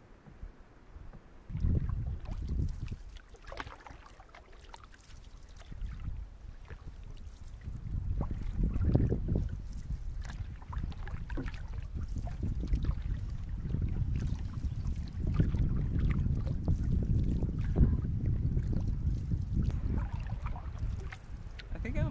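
Wind buffeting the microphone in gusts, growing stronger and steadier after several seconds, over the quiet splash and drip of canoe paddle strokes in calm water.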